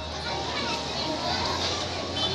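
Many children chattering together in a hall, a diffuse murmur of young voices, over a steady low hum.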